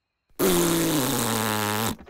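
Cartoon fart sound effect: one long, low, rasping fart starting about a third of a second in, lasting about a second and a half and dropping slightly in pitch before it cuts off.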